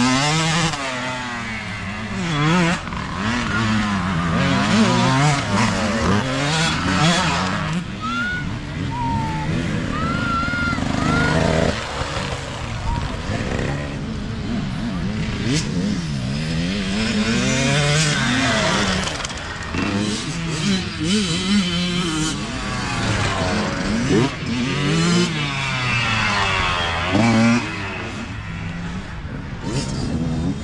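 Youth dirt bike engines revving as riders come past one after another, the pitch climbing and dropping again and again with the throttle.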